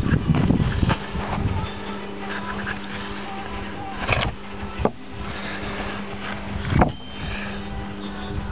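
A steady low hum with a few short knocks and rubs from handling close to the microphone, around the start, about four seconds in and near seven seconds.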